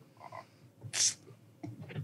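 Quiet throat and breath sounds from a man pausing mid-answer: a faint croaky sound early on, then a short hissing breath about a second in.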